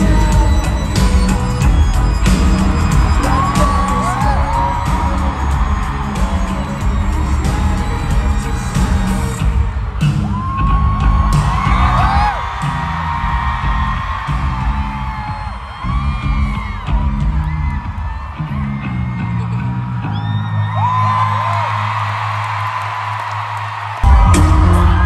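Live pop band music in an arena, recorded on a phone among the crowd, with the audience whooping and screaming over it. The bass-heavy music thins out about ten seconds in, and a long held low note runs under the cheering near the end.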